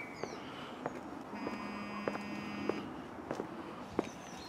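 Footsteps of someone walking at a steady pace on a paved street, a step about every 0.6 s. A steady electronic buzz sounds for about a second and a half in the middle, and a few short bird chirps are heard.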